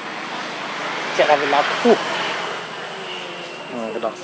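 Noise of a passing vehicle swelling to a peak around halfway and easing off, with a few short voice sounds over it just before the peak.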